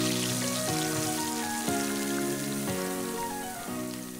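Hot oil with freshly fried nuts poured over a bowl of fatteh, sizzling with a steady crackling hiss. Background music plays underneath, its chords changing about once a second.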